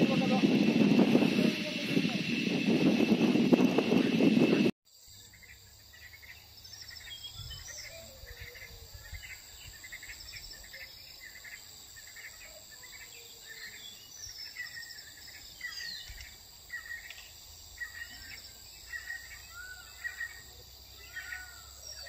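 Quiet natural outdoor ambience: a bird calling over and over with short chirps, above a steady high insect hum. For the first five seconds a louder noisy rush with voices covers it, and it cuts off suddenly.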